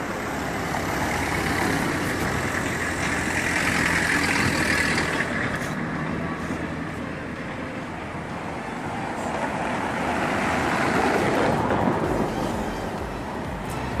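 City street traffic going by, with no engine close by: the noise swells twice as vehicles pass, once about four seconds in and again around eleven seconds.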